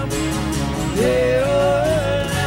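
Acoustic guitar strummed in chords, with a man singing; about a second in, a long sung note slides up and is held with a slight waver.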